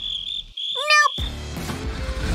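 A steady high-pitched tone, like a cricket's chirring, holds for just over a second with a brief break near the middle. A child's short 'Nope' comes about a second in, and background music returns near the end.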